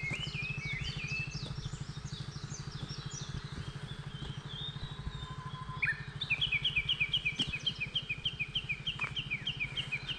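Wild birds singing at dawn: quick, chirping phrases for the first few seconds, then one bird repeating a short two-note call about four times a second from about six seconds in. A steady low hum runs underneath.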